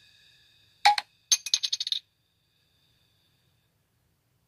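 A sharp metallic clink about a second in, followed by a fast rattle of small clinks that stops about two seconds in. A faint high ringing tone fades out before the first clink.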